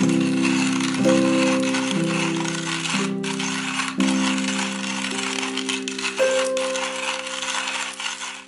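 Porlex Mini stainless steel hand grinder's ceramic conical burrs crushing coffee beans as the crank is turned, a continuous gritty rattle, over background music.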